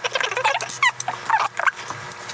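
Sped-up time-lapse audio of two people talking while building with LEGO: their voices are fast-forwarded into quick, high chattering chirps, mixed with rapid clicks and rattles of plastic bricks.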